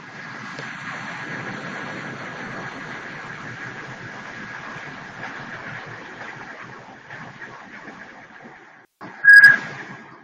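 Open conference-call phone line after being unmuted: a steady hiss with a faint thin whistle in it, stopping abruptly near the end, then a short electronic beep.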